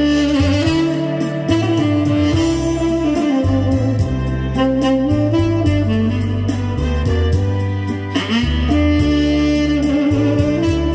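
Sky Wind tenor saxophone playing a slow soul-ballad melody in long held notes over a backing track of bass, drums and guitar. The line dips with a falling slide about eight seconds in before the next phrase.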